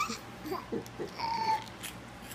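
A toddler's short high-pitched laughing vocal sounds, with one brief held squeal a little past halfway.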